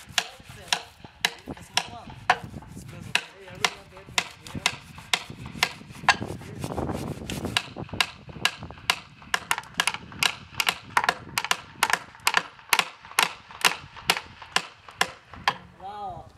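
Hammer blows on wood, spaced irregularly at first, then a steady run of about two sharp blows a second through the second half.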